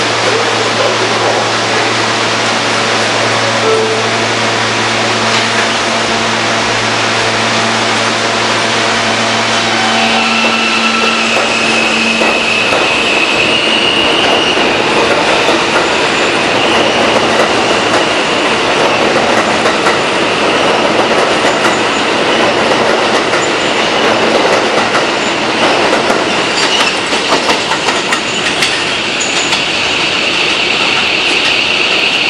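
An R160A subway train idles at the platform with a steady electrical hum, then pulls out about ten seconds in. Its wheels rumble and clatter on the elevated track, with a high-pitched squeal running over them.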